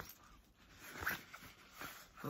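Faint rustling and soft clicks of a small nylon mesh sacoche being handled and opened, with one brief high-pitched squeak about a second in.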